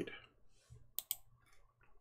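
Faint, sharp clicks in a quiet room: two close together about a second in, then a few softer ticks.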